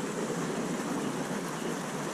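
Steady rush of running water, with faint voices in the background.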